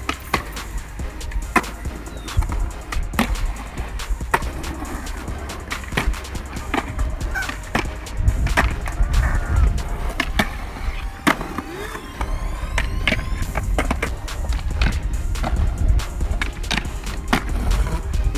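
Skateboards on concrete: a string of sharp clacks from tail pops and landings against the rolling noise of wheels. A steady low rumble of wind on the microphone runs beneath.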